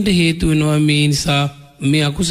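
A Buddhist monk's voice chanting a sermon, holding long, level notes with a short break in the second half.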